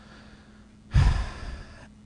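A man's breath close into a podium microphone: after a brief quiet pause, one breath of about a second starts about a second in, taken just before he goes on talking.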